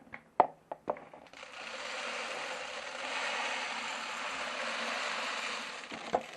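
Mixed grain poured from a container into the yellow Arcus hopper feeder, a steady rushing hiss of kernels pouring for about five seconds. A few sharp knocks in the first second come before the pour.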